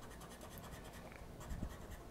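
Scratch-off lottery ticket being scratched with a flat scraper: faint, rapid scraping strokes, many to the second.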